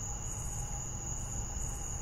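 Crickets trilling in one steady, unbroken high tone over a low background rumble.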